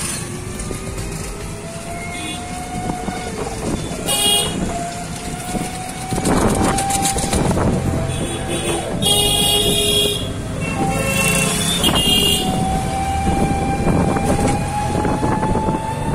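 Street traffic heard from a moving open-sided passenger rickshaw: steady road noise with a slowly rising whine, and vehicle horns tooting about four seconds in and again twice around nine to twelve seconds in.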